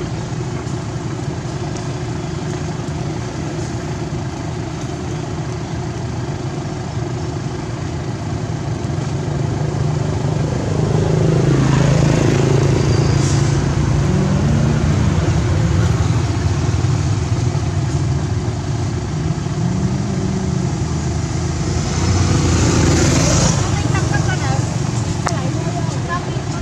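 A motor vehicle engine running, steady and low, getting louder about eleven seconds in, with its pitch rising and falling a couple of times.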